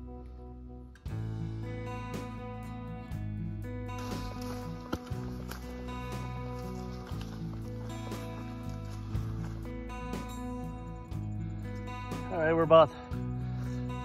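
Background music, acoustic guitar with chords changing every second or so. A man's voice comes in briefly near the end.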